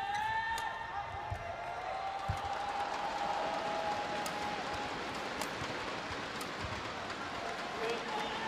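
Badminton rally in an arena: sharp shuttlecock strikes about once a second and a few thuds of players' footwork, over steady crowd noise with spectators' voices.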